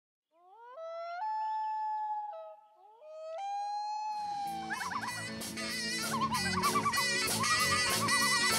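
Opening of a swing-style song: two rising slides up into long held notes, then a full band with drums and saxophone-like wavering lines comes in about four seconds in.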